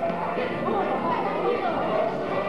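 Many children's voices chattering over background music, echoing in a large hall.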